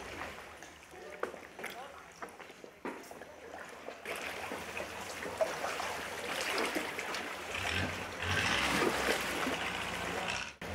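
Paddles dipping and water splashing around inflatable canoes, with scattered small knocks; from about four seconds in it grows louder, with other people's voices chattering.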